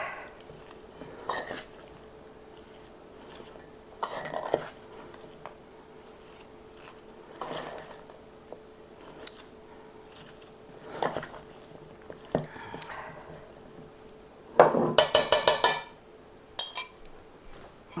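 A spoon scraping and clinking against a stainless steel mixing bowl as a dressed broccoli and cauliflower salad is stirred. The strokes come every few seconds, with a quick run of clinks near the end.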